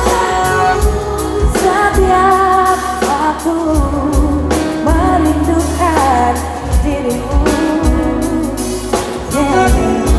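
A live pop band: a female singer's sung melody over electric bass and a drum kit.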